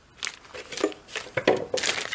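Plastic hardware bags crinkling and loose steel bolts clinking together as hands sort through them, in short irregular rustles and clinks.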